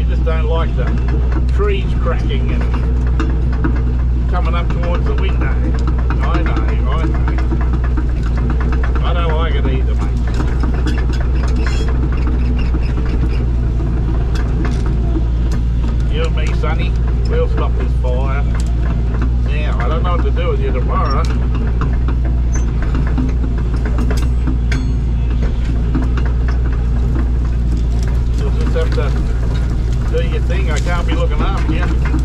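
Diesel engine of a tracked earthmover running steadily under working load, heard from inside its cab as a constant deep drone.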